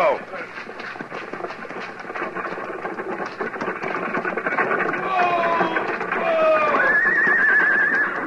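Hoofbeats of several horses on the move, a radio sound effect, growing louder. High, drawn-out sliding calls sound several times in the second half, the last one wavering for about a second near the end.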